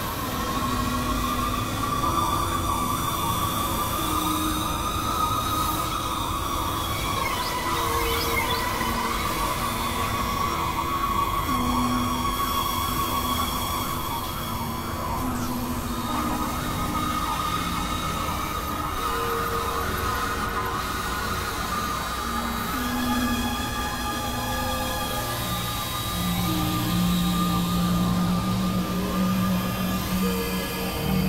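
Experimental electronic music of layered drones: a held, wavering tone sits over scattered short low synth notes, and a stronger low sustained tone comes in near the end.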